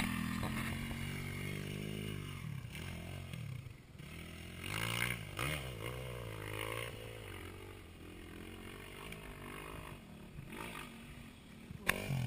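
Dirt bike engines running: a steady idle underneath while an engine revs up and down, its pitch rising and falling, as a bike climbs a steep sandy slope.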